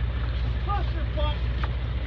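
Fishing boat's engine running with a steady low drone, with indistinct voices over it.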